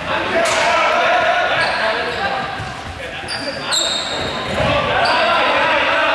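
Many young players' voices and shouts echoing in a large sports hall, with balls bouncing on the court floor. A few short high squeaks come between about one and a half and five seconds in.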